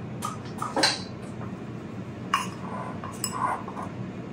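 A handful of separate clinks and knocks of glass bowls and kitchen utensils being handled on a countertop. Near the end a wooden spoon starts stirring batter in a glass mixing bowl.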